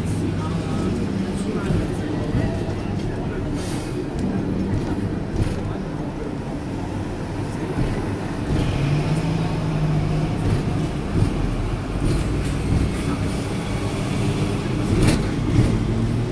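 Hong Kong double-decker electric tram running along its street track, a continuous low rumble of the tram in motion mixed with the surrounding city traffic. A steady low hum becomes stronger a little past halfway, and there are a few sharp knocks.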